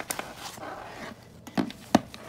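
A phone in a hard case being slid into a nylon chest-pack pocket: fabric rubbing with a click at the start and two sharp knocks near the end, the last the loudest.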